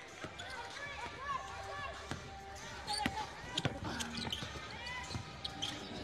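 Basketball court sounds: sneakers squeaking in short chirps on the hardwood floor, with a few sharp knocks of a ball bouncing and voices on court.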